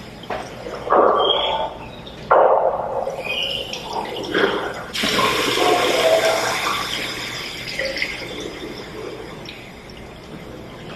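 Water sounds in a tiled restroom: splashing at a sink early on, then a toilet flush rushing from about halfway through and slowly fading.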